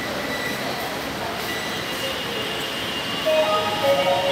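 Metro train running through the station: a steady rushing noise, with a louder pitched sound joining about three seconds in.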